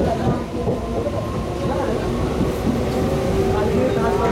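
Mumbai suburban local train running, heard from inside its luggage compartment: a steady loud rumble of wheels and carriage.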